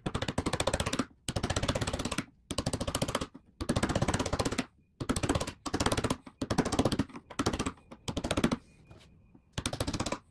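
A hand chisel paring a Cuban mahogany guitar neck, shaping the carve. It works in short strokes of rapid crunchy clicks, each about a second long, with brief pauses between them.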